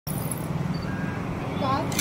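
Steady low rumble of street traffic, with a voice speaking briefly near the end.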